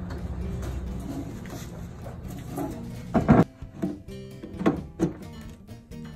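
Background music, with a few knocks of a plastic power strip against a plywood board as it is hung onto screws; the loudest knock comes about three seconds in, two lighter ones follow a second or two later.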